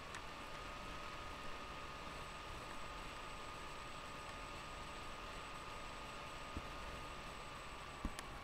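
Low, steady hiss with a faint, steady high whine: room tone picked up by a webcam microphone. A single faint click comes near the end.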